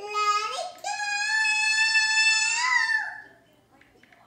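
A young girl singing long, high held notes with no clear words: a short note, then a higher note held for about two seconds that wavers near its end and stops about three seconds in.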